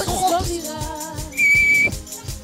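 A single short, steady whistle blast about one and a half seconds in, the loudest sound, over a steady low beat of about four strokes a second and the tail of group singing.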